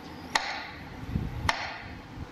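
Two sharp, short clicks about a second apart, part of a steady slow beat, over a low outdoor background.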